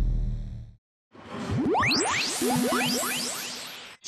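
Broadcast intro graphics sound effects: the tail of a deep boom fades out, a brief silence, then a swoosh made of quick rising sweeps with a few short held tones, fading and cutting off suddenly at the end.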